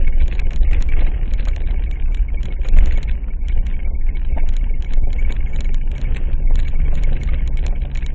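Vehicle driving over a bumpy gravel road, heard from inside the cabin: a steady low engine and road rumble with frequent rattles and knocks from the jolting, and a steady engine note coming up about five seconds in.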